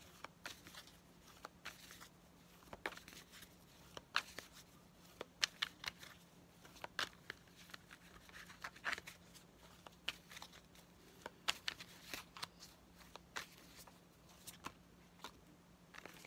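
A Rider-Waite tarot deck being shuffled by hand, giving faint, irregular flicking and clicking of cards several times a second.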